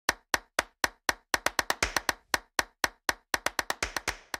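Percussive intro jingle of sharp, dry hits, about four a second, quickening into faster runs twice, about one and a half and three and a half seconds in.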